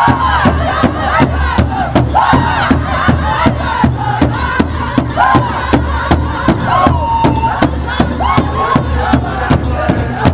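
Powwow drum group singing in unison in high, wavering voices over a fast, steady beat struck together by several singers on one large shared bass drum with drumsticks.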